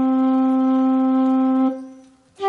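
Electronic keyboard playing a single held note with a steady, wind-instrument-like voice, released near the end.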